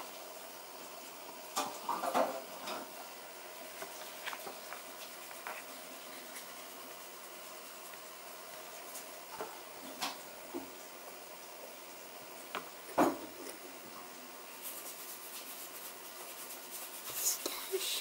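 Quiet room with faint whispering and a few scattered light taps and knocks, the sharpest about 13 seconds in; voices come back near the end.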